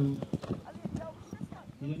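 A horse galloping on turf, its hoofbeats fading as it moves away, with a voice speaking over them.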